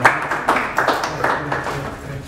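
A small group clapping unevenly, mixed with laughing voices.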